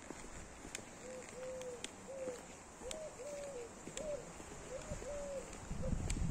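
A dove cooing in repeated three-note phrases, a short note, a longer one, then a short one, about every two seconds.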